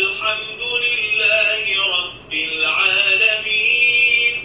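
Recorded Arabic Quran recitation in a man's chanting voice, played through the small built-in speaker of an electronic prayer mat, so it sounds thin and cut off at the top. Two long melodic phrases with a short break about two seconds in.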